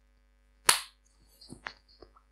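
Handling noise from a hand grabbing the recording camera: one sharp knock a little over half a second in, then a few softer clicks and knocks near the end.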